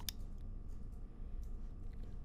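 Quiet room tone with a faint steady hum and a few faint clicks.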